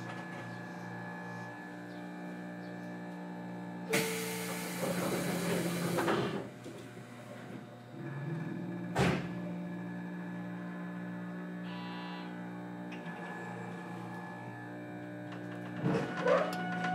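Interior sound of a JR Kyushu 813 series electric train car: a steady hum with a faint regular pulsing, a loud hiss about four seconds in that lasts around two seconds, and a sharp clunk about nine seconds in.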